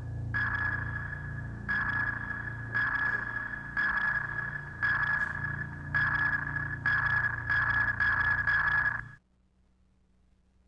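Submarine sonar pings in a film soundtrack: a single high ping about once a second over a low rumble, coming faster near the end, then cut off suddenly.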